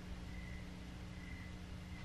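Faint room tone with a steady low hum and a faint high tone that comes and goes.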